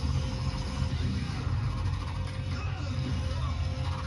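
Action TV soundtrack of dramatic music mixed with fight sound effects for a monster's spinning attack, heard through a television's speaker.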